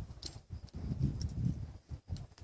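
Young Quarter Horse colt nosing and snuffling at arena sand with its head down, making irregular low breathy and rustling sounds, with a brief click about a quarter second in.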